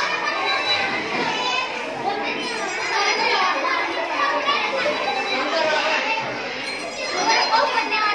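A crowd of schoolchildren talking over one another: many overlapping voices of excited chatter.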